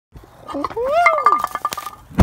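A man's excited whoop, "Woo!", rising and then falling in pitch, with a scatter of sharp clicks beneath it.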